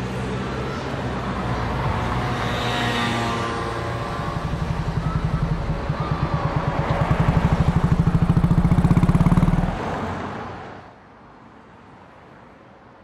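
Royal Enfield single-cylinder motorcycle running, its even pulsing exhaust beat growing louder from about four seconds in as it rides past, then fading away near the end.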